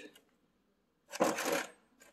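A machined aluminium lathe tool holder being handled on the workbench: one brief scraping clatter about a second in.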